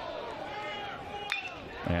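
Ballpark crowd chatter, with one sharp metal-bat ping a little past halfway as the batter lines a pitch for a base hit.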